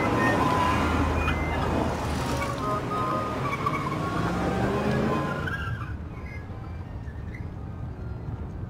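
City street traffic: cars passing with a low engine note rising in pitch, among scattered street noises. About five and a half seconds in it gives way to a quieter, duller steady hum from inside a car.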